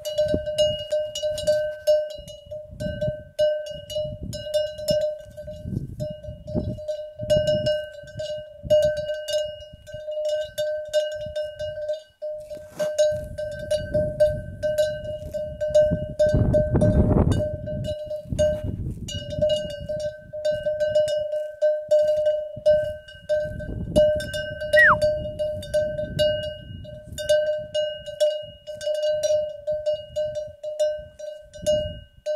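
Cow's neck bell clanking and ringing almost without pause as the cow moves its head to crop grass, the clanks running together into one steady ringing note with brief gaps. Low rustling noise sits underneath, louder a little past halfway.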